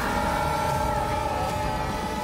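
Several men screaming together in a long held yell over the rumble and noise of a car.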